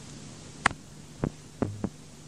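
Four short, sharp taps or knocks, the first the loudest, over a steady low hum.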